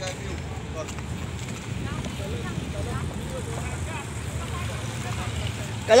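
Steady low rumble of street traffic, with faint distant voices over it; a loud shout cuts in at the very end.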